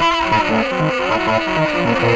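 Saxophone played solo: a fast, repeating low pattern of short notes runs without a break under a held higher tone that bends slowly down and back up.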